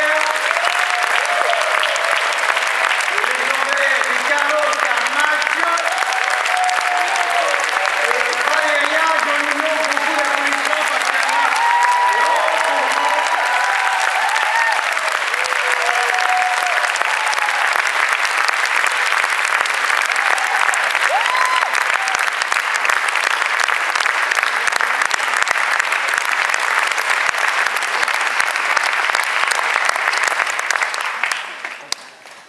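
A large audience applauding steadily, with voices calling out over the clapping during the first half.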